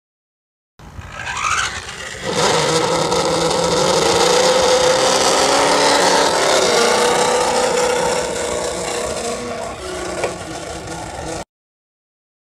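Radio-controlled cars driving off across gravelly asphalt: a steady motor whine over tyre and gravel scraping, with a short rising whine near the start. The sound begins about a second in and cuts off suddenly near the end.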